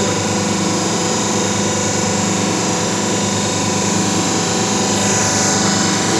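Hydraulic paper plate making machine's electric motor and pump running, a steady mechanical hum with a fine rapid pulse.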